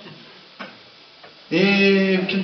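A man's voice through a microphone and PA speakers starts a held, sung line about one and a half seconds in, after a quiet pause with a faint click.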